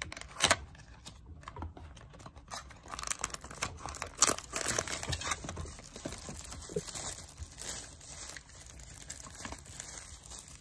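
Rustling and crinkling of packaging as a small cardboard box is opened and a charger base is pulled out of its plastic wrapping bag. The sound comes in irregular handling rustles and scrapes, with a few sharper snaps, the loudest about half a second in and just after four seconds.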